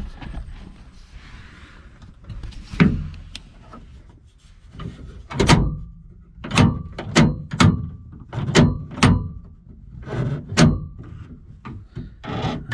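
Door latch and lock mechanism inside a 1973 GMC truck's driver door being worked by hand, over and over: sharp metal clacks, a couple at first, then a run of about two a second through the second half. The mechanism is catching, which the owner puts down to old, dried-out grease binding the parts.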